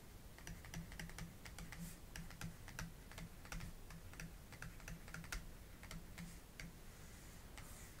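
Faint, irregular tapping and clicking of a stylus on a pen tablet as words are handwritten.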